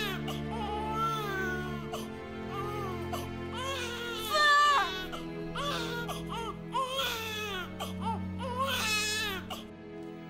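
An infant crying in a run of wavering wails, loudest about four and a half seconds in, mixed with a woman's sobbing, over sustained slow background music.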